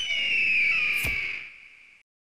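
Outro logo sting sound effect: a high, slightly falling tone that fades out, with one deep hit about a second in.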